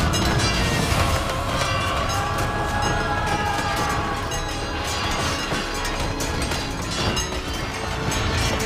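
Dramatic background music over the din of a staged battle: a dense, continuous rumble of clamour with scattered clashes.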